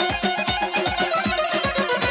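Saz, the long-necked lute, strummed in a fast, even rhythm of about five strokes a second, with a steady beat pulsing underneath in a folk medley.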